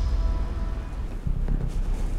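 Wind buffeting the microphone outdoors, a steady low rumble, with the last held note of the background music dying away in the first second.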